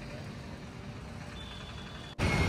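Steady low rumble of a bus engine and road traffic, heard from inside a slow-moving bus, with a faint thin high tone near the end.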